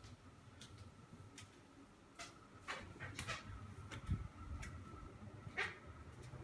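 Footsteps and light knocks as someone walks across a tiled floor, irregular and about one every half second to second, over a faint steady high hum.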